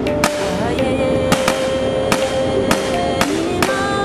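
A rifle fired in single shots: about seven sharp cracks at uneven intervals, over background music.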